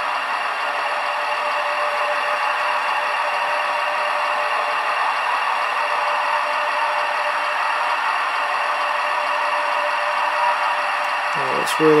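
HO-scale model train running on the layout: a steady whir with a faint constant hum.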